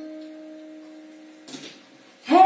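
A soft, low chime-like musical note, held for about a second and a half. It is the last note of a short run of bell-like notes. A brief breathy rush of noise follows near the end.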